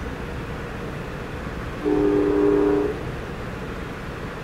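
A locomotive horn sounds one short blast of about a second, a chord of several notes, over the steady rumble of a passenger coach rolling along the rails.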